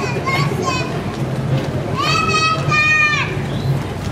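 Children's high-pitched shouts over street crowd noise: a few short cries near the start, then two long, held cries about two seconds in.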